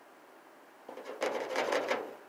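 Pet rat scraping at its enclosure. Just before halfway through, a burst of rapid rasping strokes begins and runs for about a second.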